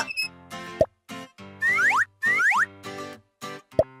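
Children's cartoon music with comic sound effects: a quick rising boing about a second in, two pairs of rising whistle-like slides in the middle, and another short boing near the end.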